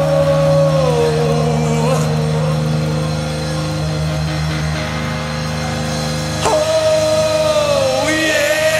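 Live heavy metal band in a slow passage: a male singer holds long notes that slide down in pitch, with a fresh note scooping in about six and a half seconds in, over a steady low guitar drone.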